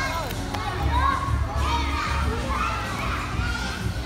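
A crowd of young children talking and calling out all at once, many high voices overlapping.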